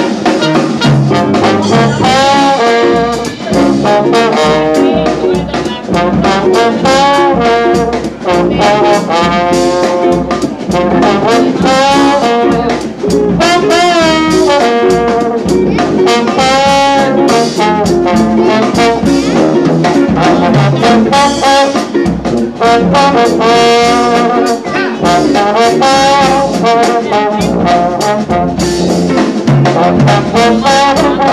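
Live jazz band playing: a trombone carries the melody over tuba bass, with a steady beat.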